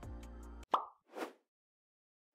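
Editing sound effects for an animated end card: faint room hum cuts off, then a short pop with a quick falling tone, followed by a brief whoosh.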